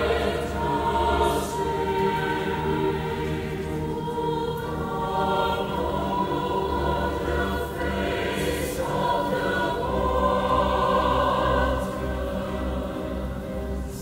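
Mixed choir singing with a symphony orchestra in a live classical oratorio performance, the sound full and sustained, swelling a little past the middle.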